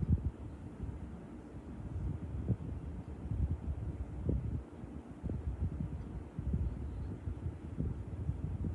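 Low, uneven rumbling with soft bumps on the microphone, like wind buffeting or handling noise.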